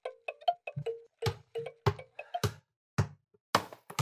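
A basketball dribbled on a wooden floor, thudding about every half second from about a second in, over light plinking music.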